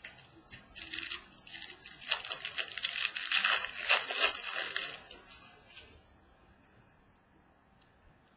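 Foil wrapper of a Bowman Jumbo baseball card pack being torn open and crinkled: a dense crackle lasting about four seconds, loudest near the middle, then stopping.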